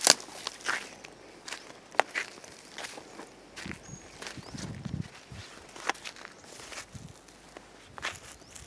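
Footsteps through dry, burnt ground litter: irregular crunches and snaps of dry leaves and charred twigs underfoot.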